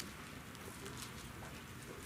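Faint rustling of Bible pages being turned, with a few light ticks over a low steady room hum.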